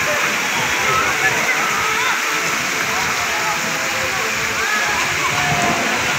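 Steady rush of running and splashing water in an outdoor water-park pool, with scattered distant voices and calls of people in the water.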